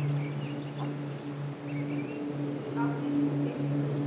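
A steady low hum with a fainter tone an octave above it, dropping out briefly a few times, with faint high chirps of small birds.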